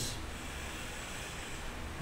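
Steady background hiss with a faint low hum, and no distinct event: the recording's noise floor between spoken sentences.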